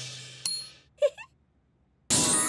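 Music dying away, then a single metallic ding about half a second in that rings briefly and fades. A short pitched blip follows about a second in, then silence.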